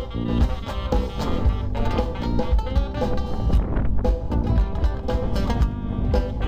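Live band playing an instrumental break: acoustic guitar and a second guitar over a steady beat, with no singing.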